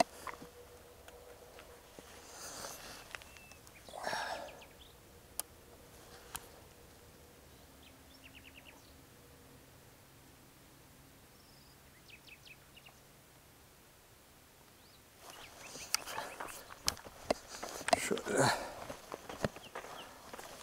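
Handling noises of a shotgun and footsteps on gravel, with long quiet stretches and a few faint chirps between. A denser run of clicks and rustles starts about three-quarters of the way in.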